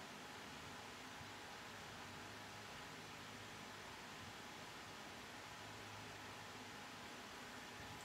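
Faint, steady hiss of room tone with no distinct event.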